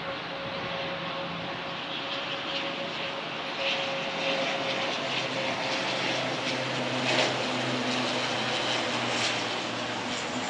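Fokker 50's twin Pratt & Whitney Canada PW125B turboprops flying past on approach: a steady propeller drone with a high tone held through it, growing louder as deeper tones come in about halfway.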